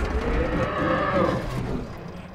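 Deep, wavering lowing groan of a giant buffalo creature pinned under helicopter wreckage, a sound of distress. It fades out about a second and a half in.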